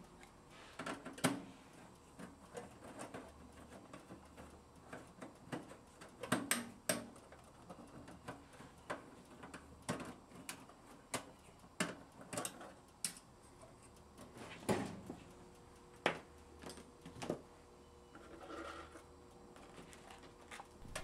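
Faint, irregular small clicks and taps of a screwdriver working the screws that hold a thin steel strap to a kiln's ceramic-fibre firing chamber, with the strap and thermocouple being handled.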